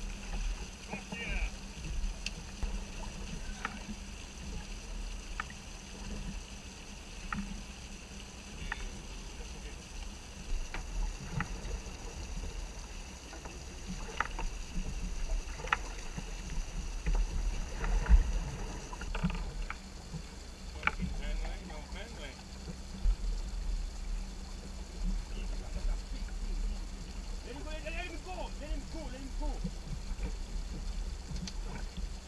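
Wind buffeting the microphone and choppy sea water washing against a small open wooden boat, with scattered sharp knocks from the boat and its gear.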